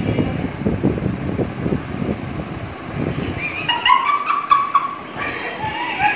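Low muffled rustling and murmur, then from about three seconds in high-pitched squealing laughter with a few sharp clicks.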